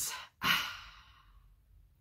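A woman's breathy sigh, one exhalation that fades out over about a second.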